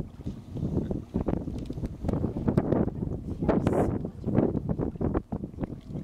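Wind buffeting the microphone: an uneven low rumble that surges and drops every second or so.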